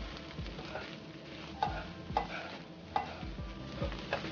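Chopped dried shrimp (ebi) frying in a nonstick wok, sizzling as a spatula stirs and scrapes it around the pan. A few sharper scrapes come in the second half.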